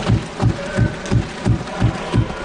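Members of Parliament thumping their desks in approval, a steady beat of about three heavy thumps a second.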